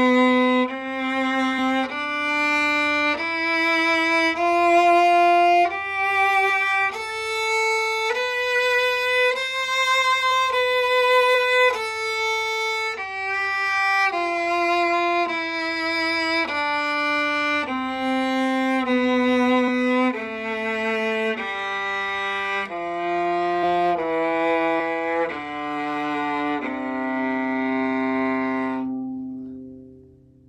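Viola playing a C major scale with big, even bow strokes, about one note per second: it climbs to the top C about ten seconds in, then steps back down two octaves to low C. The low C is held as the last note and dies away just before the end.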